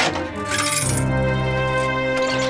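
A click and a short metallic clatter, typical of a telephone receiver being put back on its cradle at the end of a call. About a second in, a scene-transition music cue of held, droning tones begins.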